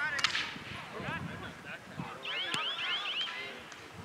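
Field hockey sticks cracking against the ball in play, a sharp clack just after the start and another about two and a half seconds in, amid high-pitched shouting and calling from players and spectators.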